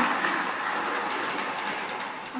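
Toy electric train running on three-rail track: a steady rolling rumble with faint clicks from the wheels and rails, growing slightly fainter.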